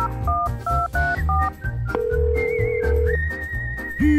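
Telephone keypad tones being dialled: about five quick two-note beeps, then a steady ringing tone for about a second, over background music with a bass beat and a high whistle-like tone in the second half.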